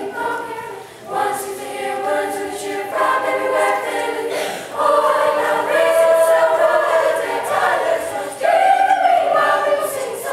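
Middle school chamber choir of girls and boys singing, with a brief dip about a second in and the singing growing louder about halfway through.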